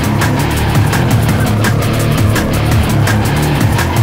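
Heavy instrumental rock: distorted electric guitars over a steady drum beat with strong low notes.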